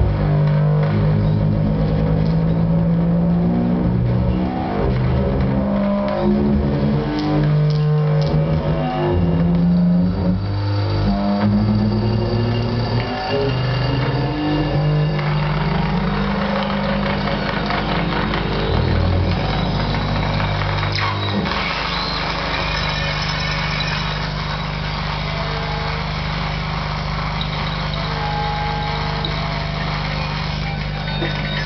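Live electronic noise music: low, steady electronic tones that jump abruptly from pitch to pitch every fraction of a second, then settle about two-thirds of the way through into a sustained low drone under a denser layer of noise.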